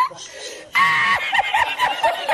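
A man laughing uncontrollably in high-pitched, squealing bursts, loudest from about a third of the way in and then breaking into short gasping fits: the 'El Risitas' laughing-meme clip.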